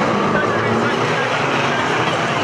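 Several 2-litre banger racing cars' engines running and revving together at once, a steady, dense mechanical noise with no single crash standing out.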